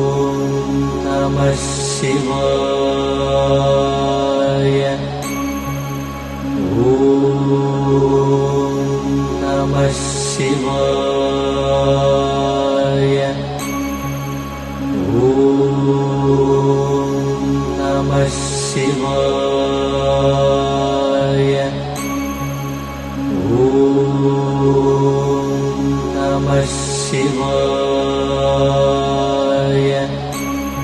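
Background devotional music: a chanted Hindu mantra over a steady low drone. The phrase repeats about every eight seconds, with a brief high shimmer once in each cycle.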